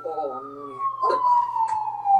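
A siren wailing in the anime's soundtrack, one tone sliding slowly and steadily down in pitch, with quiet Japanese dialogue beneath it.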